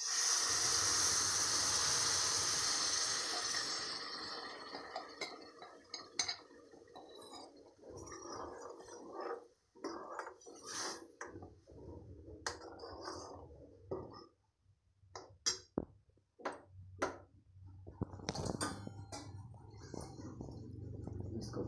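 Wet gravy paste poured into hot oil in a metal kadai, sizzling loudly for the first few seconds and dying down. Then a spoon stirs and scrapes the pan, with scattered clinks.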